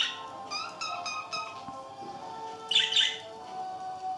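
Budgerigars chirping and squawking: a chirp at the start, a quick run of about four short chirps around a second in, and a loud harsh squawk about three seconds in.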